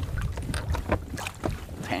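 Wind rumbling on the microphone, with a scatter of light knocks and clicks as a landing net and gear are handled aboard a small boat.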